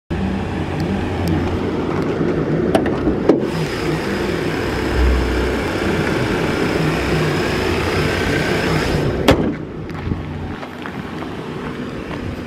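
Mercedes-Benz R300's V6 engine idling steadily, with a few sharp clicks; the sound drops in level about nine and a half seconds in.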